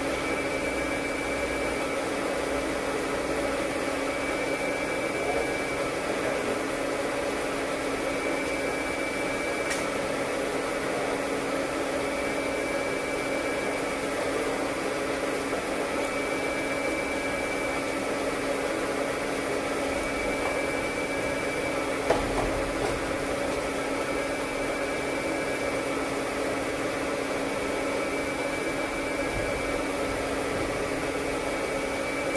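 Steady mechanical drone of running machinery, with a faint higher tone about a second long recurring roughly every four seconds. A single sharp knock about three-quarters of the way through.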